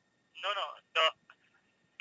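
Two short spoken words from a voice heard over a telephone, thin and without low end, with quiet between them.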